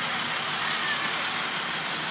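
School bus driving slowly past at close range, its engine running steadily.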